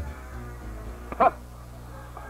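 Background music fading out, with a single brief dog yip about a second in.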